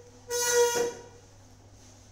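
A single short honk, a steady high-pitched tone lasting about half a second, a little after the start.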